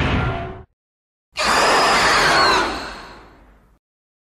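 Godzilla roar sound effects: the tail of one roar cuts off under a second in, then a longer screeching roar starts about a second and a half in, falls in pitch and fades out over about two seconds.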